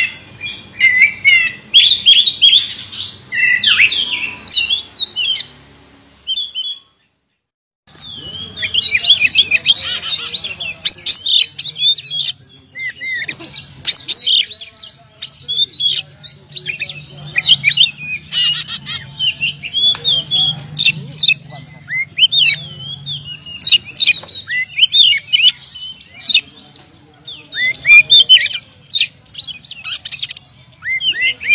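Oriental magpie-robin singing loud, varied whistled phrases and chirps in quick succession, with a brief silent break about seven seconds in.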